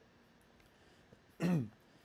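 A man clears his throat once, briefly, about a second and a half in, after a quiet stretch of room tone.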